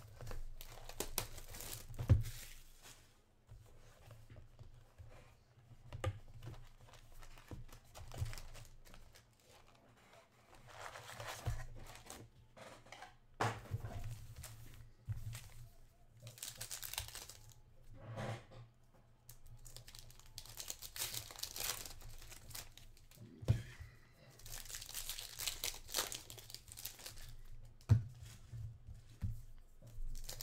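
A 2021 Panini Contenders football card box being opened and its foil card packs handled: packaging tearing and packs crinkling in irregular bursts, with a few knocks as things are set down.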